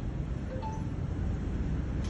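Steady low rumble of background noise, with two faint short tones about half a second in.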